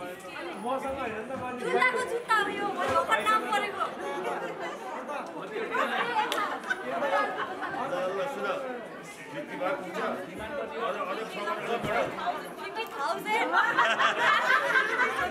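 Overlapping chatter of a group of people talking at once in a large hall, with no single voice standing out.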